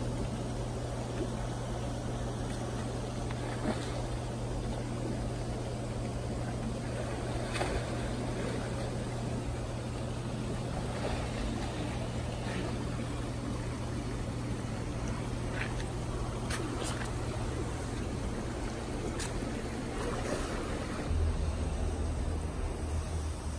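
Backyard swimming-pool ambience: water trickling and splashing over a steady low hum, with a few short faint clicks.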